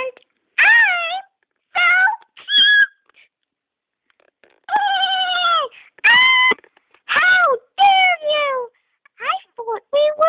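A high-pitched voice making a run of short, wordless cries that mostly slide down in pitch, separated by brief pauses.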